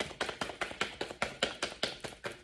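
A deck of reading cards shuffled by hand: a quick, even run of soft card slaps, about six or seven a second.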